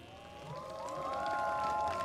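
Audience whooping and cheering at the end of a live band's song, rising about half a second in as several voices overlap.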